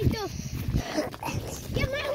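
Voices calling out over low, jolting thuds of running footsteps and a jostled phone microphone.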